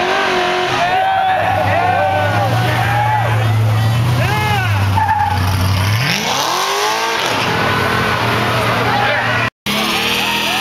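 Car doing a burnout: engine held at high revs with the rear tyres spinning and squealing, then the engine note climbs steeply about six seconds in. Crowd shouting runs underneath.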